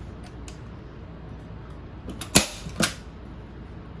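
Manual Arrow PowerShot staple gun firing a staple through fabric into the ottoman's wooden frame: one sharp snap about two and a half seconds in, followed half a second later by a second, quieter click.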